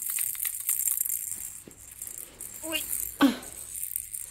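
A baby's rattle toy shaken steadily off camera, a continuous beady rattle with small clicks, while a short voice sound glides up and down about three seconds in.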